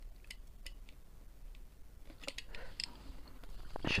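Shrink-wrapped cardboard box being handled: faint clicks and crinkling of plastic film, with a louder stretch of crinkling a little past the middle.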